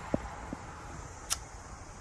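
Faint steady outdoor background noise during a pause, with a couple of brief soft tones near the start and one short sharp click a little past the middle.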